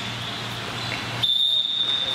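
Referee's whistle: a short toot at the start, then one long steady blast of about a second from just past the middle.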